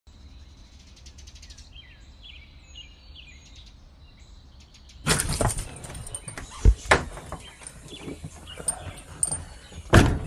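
Small birds chirping in short, downward-gliding calls, then, about halfway through, a much louder stretch of handling and rustling with a few sharp knocks as a front door and storm door are opened.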